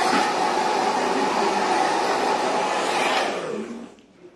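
Handheld hair dryer blowing steadily, then switched off near the end and winding down to a stop.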